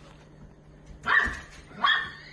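A dog gives two short, high-pitched barks, one about a second in and one near the end.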